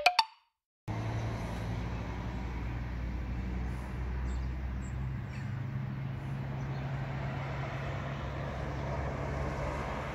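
A brief sound right at the start, then about a second of silence, before steady road traffic noise sets in: an even hiss of tyres with a low, constant engine hum.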